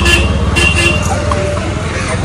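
Street traffic: a nearby vehicle engine running with a steady low rumble, and two short horn toots in the first second.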